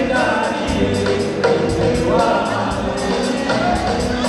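Live Comorian twarab music: a man sings lead into a microphone with other voices joining, over a steady beat.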